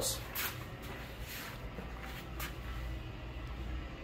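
Quiet, steady low hum with a few faint clicks.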